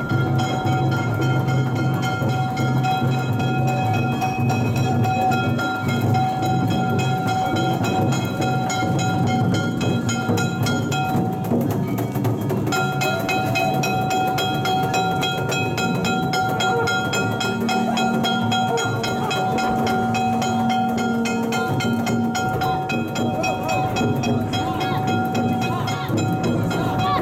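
Street festival float procession: a sustained, steady high tone with overtones sounds over a constant rumble of noise, breaking off for a moment about eleven seconds in and then resuming.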